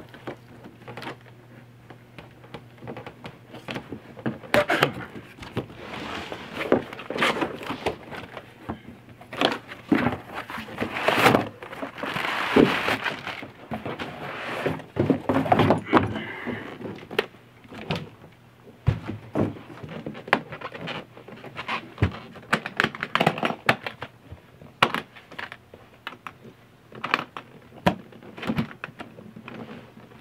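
Cardboard shipping box being unpacked by hand: sticker and cardboard rustling, a dense stretch of scraping and rustling as the hardshell guitar case is slid out of the box, and many small knocks and clicks as the case is handled. Metal case latches are being worked near the end.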